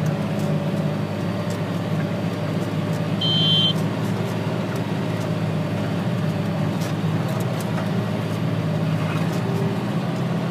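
John Deere tractor engine running steadily under load while pulling a Simba X-Press disc cultivator through worked soil, a low even drone. A short high beep sounds about three seconds in.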